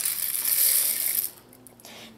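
Dried green cardamom pods poured from a small glass bottle into a dry nonstick frying pan: a dense rattle of pods landing on the pan for just over a second, then a few scattered clicks as the last pods fall.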